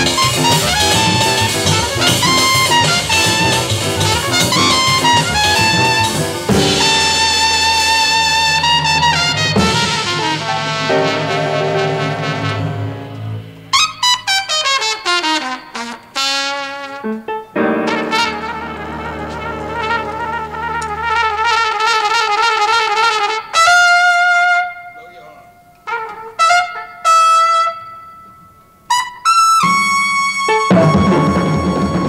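A jazz recording: trumpet playing fast runs over a full band with drums. About halfway through the band drops out and the trumpet plays on largely alone, in quick runs, trills and long held notes broken by short pauses, like a closing cadenza.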